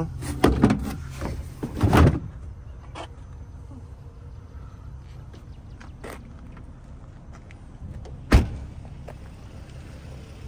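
Hardboard trunk floor panel of a Toyota Mark II being handled and set back down, with a few knocks in the first two seconds. About eight seconds in comes one loud thump as the trunk lid is shut. Under it all runs the steady low hum of the idling engine.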